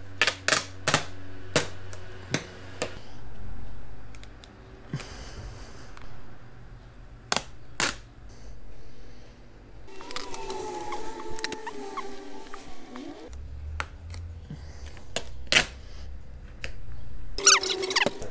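A large vinyl decal sheet handled and flexed by hand, crackling with scattered sharp clicks and snaps.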